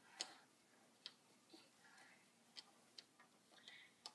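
Faint, scattered clicks and taps of cardboard jigsaw puzzle pieces being handled and pressed into place on the board, the sharpest just after the start and three or four more spread through, with soft rustling between.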